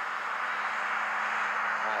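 Steady outdoor rushing noise at an even level, with a faint low hum underneath.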